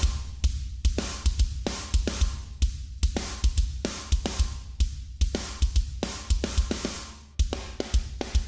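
Programmed drum playback of a kick drum and a layered snare: an EZdrummer snare stacked with a heavily compressed GarageBand Rock Kit snare, giving a punchy, rattly snare over deep kick thumps in a steady beat. Playback drops out briefly about seven seconds in and then starts again.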